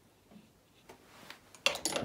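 A paintbrush rinsed in a water pot, knocking and clinking against the container: a few light ticks about a second in, then a louder cluster of clinks near the end.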